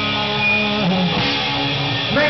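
Live rock band playing an instrumental stretch: held guitar chords over bass guitar and drums, with the low bass note changing about a second in.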